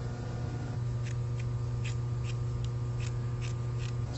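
Needle and thread being drawn through the plush fabric of a costume character head in hand sewing: a run of short, soft rasps, about two or three a second, from about a second in. Underneath is a loud, steady low hum.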